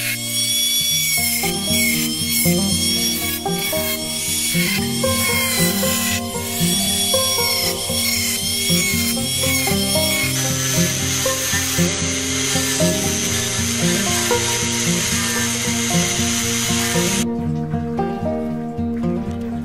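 Small rotary tool with a thin cutting disc cutting clear plastic sheet: a high motor whine that wavers in pitch as the disc bites, then holds a steadier pitch from about ten seconds in, stopping suddenly near the end. Background music plays throughout.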